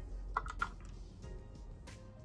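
A few light, sharp clicks, two close together early and one near the end, from handling a plastic highlighter compact and its brush.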